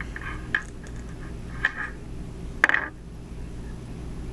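Small clicks and ticks from fingers handling a clear plastic RJ45 modular plug with Cat5e wires seated in it: three short clicks about a second apart, the last the loudest, over a steady low hum.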